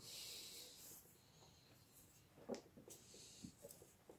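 Near silence: a soft hiss in the first second, then a few faint rustles and light clicks as thick cotton thread is wrapped around a crocheted bow tie.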